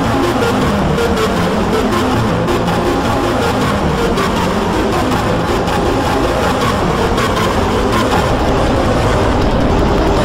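Several logo jingles and their sound effects playing at once, piled into a dense, steady jumble of overlapping music.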